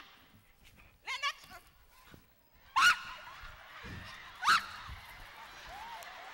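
A person's short, high-pitched cries: a brief one about a second in, then two loud ones about three and four and a half seconds in, the last rising in pitch.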